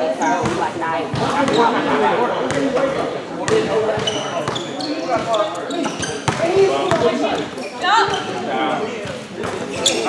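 A basketball bouncing on a gym floor as it is dribbled, the bounces echoing in a large hall, with voices in the background.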